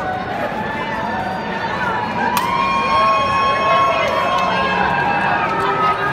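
A crowd of many voices talking and calling out at once, growing a little louder about halfway through, with one long raised shout held over the babble in the middle.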